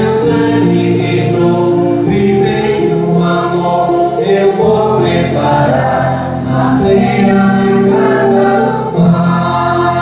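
A church hymn sung by several voices with electronic keyboard accompaniment, sustained and steady, the notes changing every second or so.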